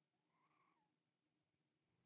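Near silence between spoken phrases, with only a very faint, brief rising-and-falling tone about half a second in.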